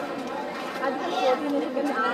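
Background chatter of several voices talking at once, with no single voice standing out.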